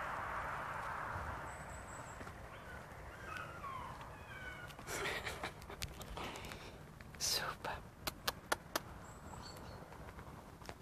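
A poodle puppy whimpering in several short, high whines, followed later by a run of sharp clicks.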